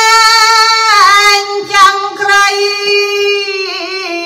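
A solo female voice chanting Khmer smot (Buddhist devotional recitation) into a microphone, holding long sustained notes with ornamented turns in pitch between them; no instruments are heard.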